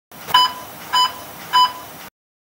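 GoPro action camera beeping three times, evenly about 0.6 s apart, each a short single-pitched tone over a faint hiss.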